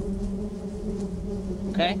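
Bees buzzing: a steady, even drone held at one low pitch.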